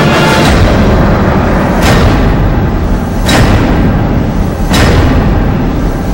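Dramatic soundtrack music with heavy booming drum hits about every second and a half.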